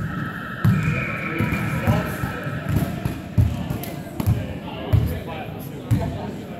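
Basketball bouncing on a hardwood court, dribbled in a repeated thud every half-second to a second, echoing in a large hall with voices. A steady high tone sounds for about the first three seconds.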